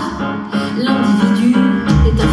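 Live pop song accompaniment in an instrumental gap between sung lines: piano with plucked guitar-like strings playing steadily. A deep bass comes in just as it ends.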